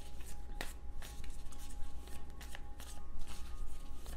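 Tarot deck being shuffled by hand: a run of irregular soft card rustles and clicks, with a faint steady tone underneath.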